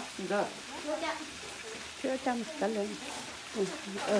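Food sizzling and steaming in a foil pan over a propane camp-stove burner, with metal tongs stirring through it, under voices talking.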